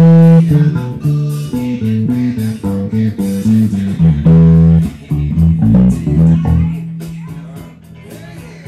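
Electric bass guitar playing a funk groove with short runs of notes stepping by semitone, in time with a backing recording that has drums. Near the end a single note is left ringing and slowly fades.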